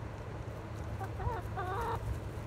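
Chickens clucking: two short, wavering calls in the second half, over a steady low rumble.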